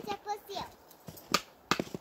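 A person's voice speaking briefly, then two sharp knocks close together in the second half.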